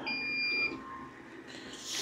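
CO₂ laser engraver giving one steady high electronic beep, about two-thirds of a second long, as the engraving job is sent to it and starts. A short, faint hiss follows near the end.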